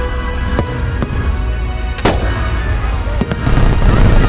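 Fireworks bursting over loud show music: a few sharp bangs, the loudest about two seconds in, over a steady low rumble.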